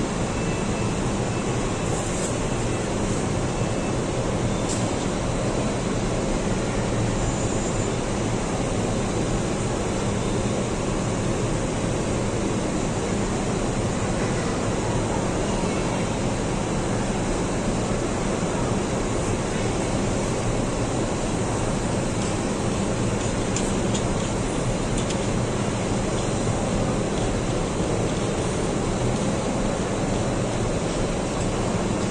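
Double-decker bus engine idling: a continuous, even noise with a steady low hum underneath, unchanging throughout.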